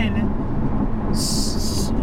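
Steady low drone of a Porsche 718 Cayman's turbocharged flat-four and its tyres heard inside the cabin while cruising. A short burst of high hiss comes about a second in and lasts under a second.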